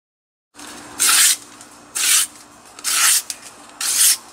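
Newspaper being torn by hand into strips: four short, scratchy rips about a second apart.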